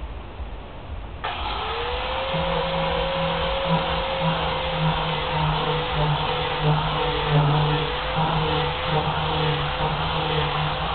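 Electric grinder (esmeril) switched on about a second in, its motor spinning up with a quickly rising whine that settles into a steady running hum.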